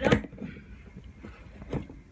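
Cardboard shipping box being cut and pulled open with scissors: a sharp tearing, rustling noise at the start and a shorter one a little past halfway.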